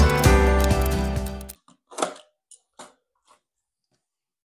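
Background music fading out and ending about a second and a half in, followed by a few short clicks and clacks of acrylic sheet being handled, the loudest about two seconds in.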